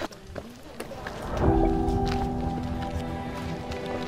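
Background music: a held chord of steady notes comes in about a second and a half in, after a quieter start with a few faint clicks.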